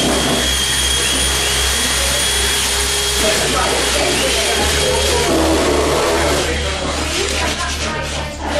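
Cordless drill motors whirring steadily as they drive screws into timber, their whine rising in pitch several times as the drill spins up. Indistinct voices talk underneath.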